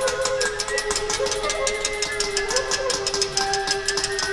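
Contemporary chamber ensemble playing, with flute and clarinet: one long held note with softer sustained high tones above it and a couple of small pitch bends, over a fast, even ticking.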